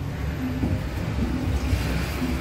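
Low rumbling handling noise on a handheld phone's microphone as it is moved about, with faint brief snatches of voices.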